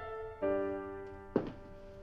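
Film score of sustained keyboard chords that shift to a new chord about half a second in. A single dull thud lands a little after the middle.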